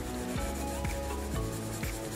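Soft rubbing of a graphite pencil lightly shading on paper, over background music with a steady beat of about two beats a second.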